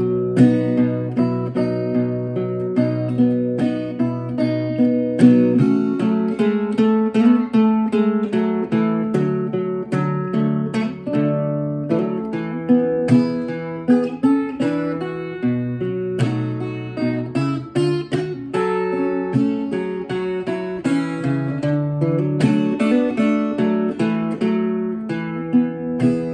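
Solo acoustic guitar playing an instrumental break: a steady run of strummed and picked chords with no singing.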